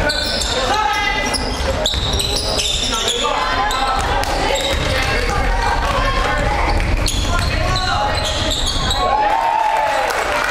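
Basketball being dribbled on a hardwood gym floor and sneakers squeaking during play, with players and spectators shouting, all echoing in a large gym.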